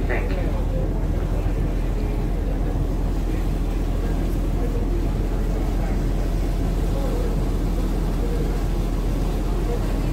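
Ferry's engine running with a steady low drone, faint passenger voices underneath.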